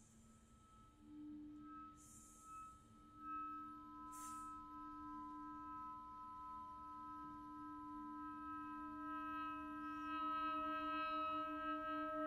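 Quiet contemporary chamber music: clarinet and other instruments holding long, steady notes that build into a slowly thickening chord, with a few short hissing noises in the first few seconds.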